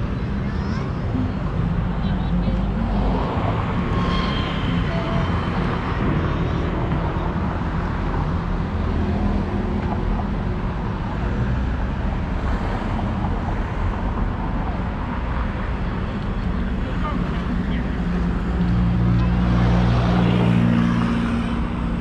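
Outdoor town ambience: steady road traffic with car engines running, and people talking in the background. The traffic gets louder for a couple of seconds near the end, with a low engine hum.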